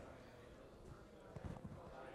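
Near silence: room tone, with a few faint soft clicks a little after the middle.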